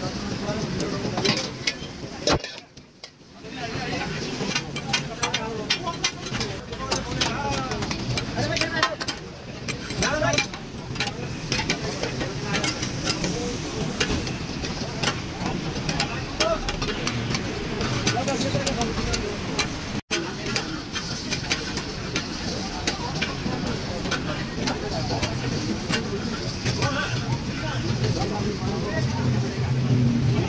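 Minced mutton (keema) with tomatoes frying on a large flat iron griddle, sizzling steadily, with many sharp metallic clicks and clatter.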